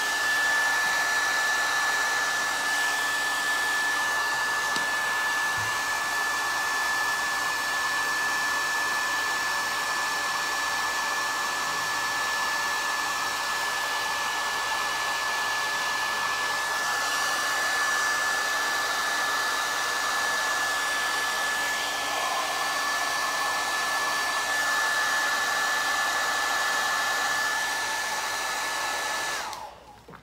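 Handheld hair dryer blowing steadily with a constant high whine over its airflow noise, drying fresh paint on a plaster frame; it is switched off and stops abruptly near the end.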